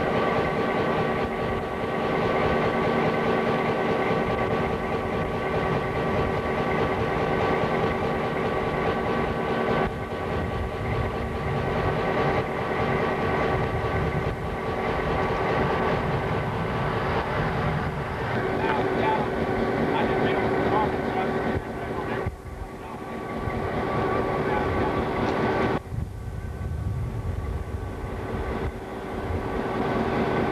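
EMD GP-9 diesel-electric locomotive running at idle: a steady engine drone with a constant whine over it.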